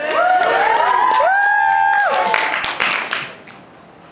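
Audience cheering and whooping in reply to the performer's greeting, several voices holding high "woo" calls over some clapping, dying away about three seconds in.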